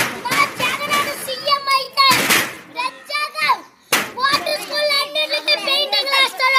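A boy talking fast and loudly in a high voice, excited and at times shouting. Sharp knocks come at the very start and again about four seconds in.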